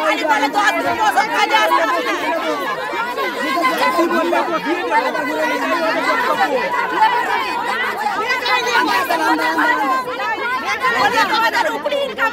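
Several women talking over one another at once, with no single voice clear and no pause.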